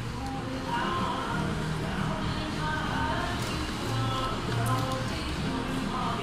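Background music with held, steady notes, with faint voices beneath it.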